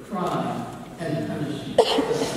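Speech: a woman talking into a microphone, with a brief sharp sound near the end.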